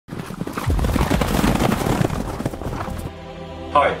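Racehorses galloping on turf, a dense run of hoofbeats over a steady roar from a large crowd, cut off suddenly about three seconds in. A man starts speaking near the end.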